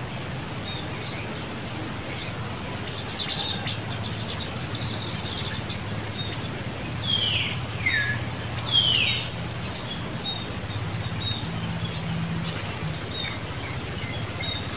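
Wild birds calling: three loud, quick downward-sliding whistled calls in a row about halfway through, with scattered faint high chirps around them. A steady low hum runs underneath.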